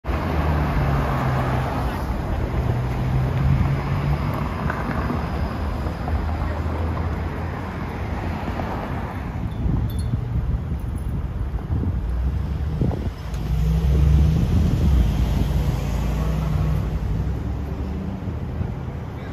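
Outdoor city ambience: wind buffeting the microphone over a steady rumble of traffic.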